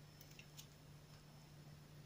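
Near silence: room tone with a faint steady low hum and a few very faint ticks in the first second.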